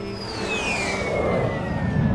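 A high, thin whistle-like tone gliding steadily down in pitch through the whole two seconds, over a dense, noisy background.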